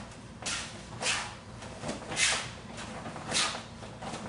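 Oblique kicks thrown and evaded in a martial-arts drill: about four short, sharp hissing bursts, roughly one a second, each dying away quickly.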